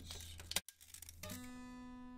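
A sharp click in the first half, then a single acoustic guitar note that starts a little past halfway and rings on steadily.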